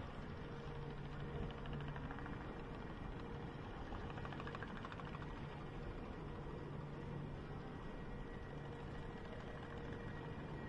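Vekoma SLC coaster train being pulled up its chain lift hill: the lift chain and drive give a steady mechanical hum, with a fast ticking rattle for a few seconds in the middle.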